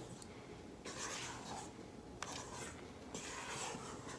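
Spatula folding and scraping batter around the bottom of a stainless steel mixing bowl, about three slow strokes, each a soft scraping swish, with a sharp tap near the middle. The batter is whipped eggs and sugar with flour being folded in.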